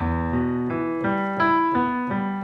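Digital piano playing a slow E minor arpeggio, single notes about three a second, each left ringing under the next.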